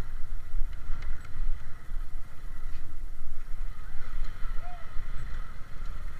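Small motorcycle riding over cobblestones, its engine and chassis making a steady, rough low rumble. The drive chain is worn and due for replacement; the rider says it is crackling all over.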